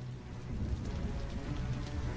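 Film soundtrack: a low droning score with a hissing, rain-like noise over it, slowly swelling in level.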